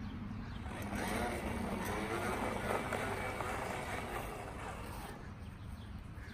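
Battery-powered toy bubble lawnmower whirring steadily as it is pushed across grass, blowing bubbles, with a thin high motor whine.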